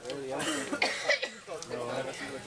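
A person coughing a few times from pepper spray irritation, with voices talking in the background.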